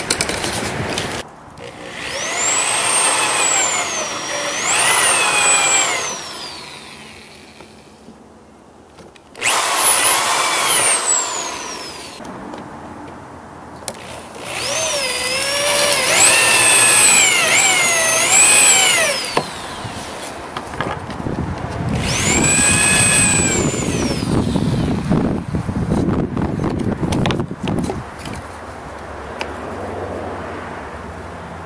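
Corded electric drill with a hole saw cutting plywood in four runs of a few seconds each, the motor whine rising and sagging in pitch as the trigger is worked and the saw bites. Rougher, lower cutting noise follows near the end.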